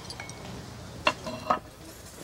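Two clinks of china and cutlery about half a second apart as dishes are set down on a table.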